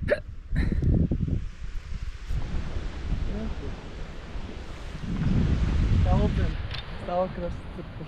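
Wind buffeting the camera microphone in gusts, heaviest about half a second in and again around five to six seconds, with a man's short voiced breaths between them.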